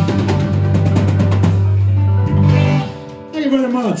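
Live rock band of electric guitars, bass guitar and drum kit finishing a song. The band stops about three seconds in, leaving a falling, sliding note near the end.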